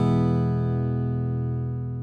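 Acoustic guitar accompaniment ending on one last chord that rings on and slowly fades away.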